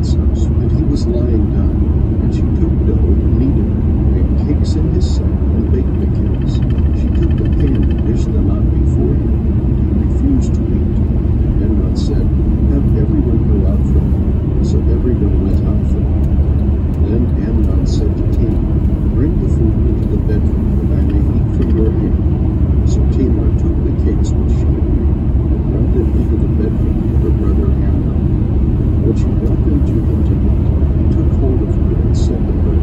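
Steady road and engine rumble inside a car cruising at highway speed, with scattered light ticks.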